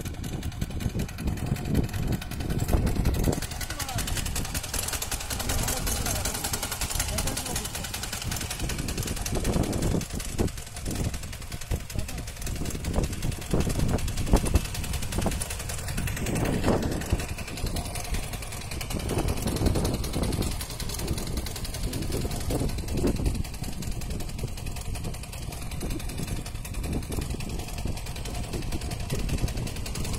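Power weeder's small engine running steadily, with people talking over it.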